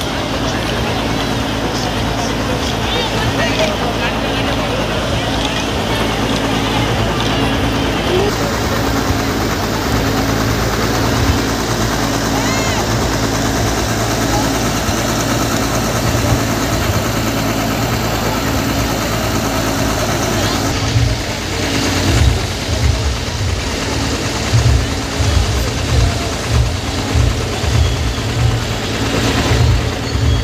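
Loud, distorted amplified music and crowd noise at an outdoor festival gathering, with a steady repeating beat. About two-thirds of the way in, heavy regular low thuds take over.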